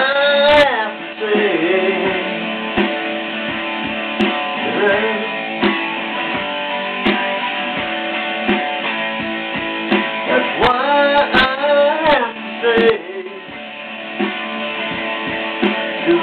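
Electric guitar instrumental break between sung lines: sustained notes with bent, wavering pitches about half a second in and again around ten to twelve seconds, over a steady held chord.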